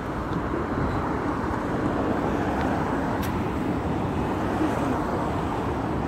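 Steady downtown traffic noise: a continuous low rumble of vehicles on the surrounding streets, with a brief click about three seconds in.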